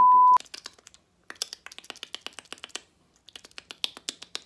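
Bars-and-tone test signal: a steady 1 kHz reference tone, the loudest sound here, sounding for about half a second at the start. It is followed by a run of light, quick clicks, about eight a second, broken by a brief pause a little before the three-second mark.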